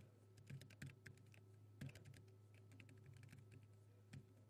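Faint typing on a computer keyboard: a quick run of keystrokes in the first second and a half, then a few scattered ones, as code is entered in a text editor.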